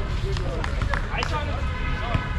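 Pickup basketball game on an outdoor court: players' voices and running footsteps, with several short sharp knocks from play on the court over a steady low rumble.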